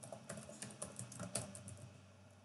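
Typing on a computer keyboard: a quick run of faint key clicks, about six a second.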